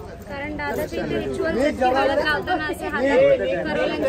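Speech only: people talking, with several voices overlapping in chatter.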